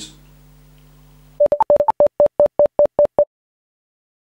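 A quick run of about a dozen short electronic beeps, mostly on one pitch with a couple of higher notes among the first few, then cutting off abruptly. A faint steady hum comes before them.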